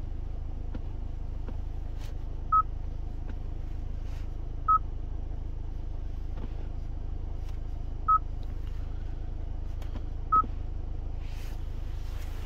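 Kia Sorento infotainment touchscreen giving a short electronic confirmation beep at each button press: four single beeps, a couple of seconds apart, over a steady low hum in the cabin.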